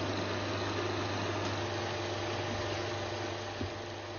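Film projector running with a steady mechanical whir over a low hum.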